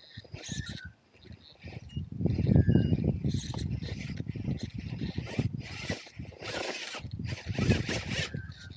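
RC rock crawler driving over rocks and dry leaf litter: irregular scraping and crunching of tyres and chassis on rock as it works its way up. A few short, high chirps sound in the background.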